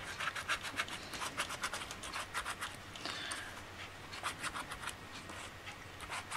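Metal ball-tipped stylus rubbing small circles into a paper flower on a foam mat, shaping and cupping the petals: a faint run of quick scratchy strokes, several a second, with a short pause about halfway.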